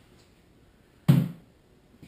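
A single sharp thump as a paintball mask is set down on a plastic folding table, dying away quickly.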